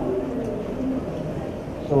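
Quiet lecture-hall room tone with a faint, low murmur of a voice, then a man starts speaking near the end.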